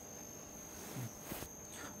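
Quiet room tone from the lecture recording, with a faint steady high-pitched whine. A couple of faint short noises come between about one and one and a half seconds in.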